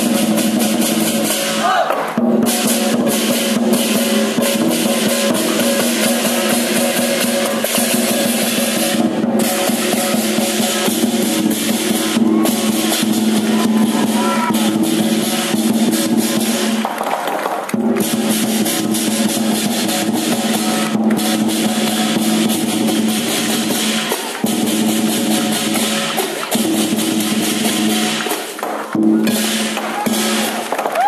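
Southern Chinese lion dance percussion: a big drum played in rapid rolls together with crashing cymbals and ringing gong, with a few brief breaks in the beat.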